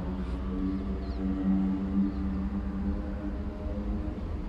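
A steady low hum with several overtones, swelling slightly around the middle.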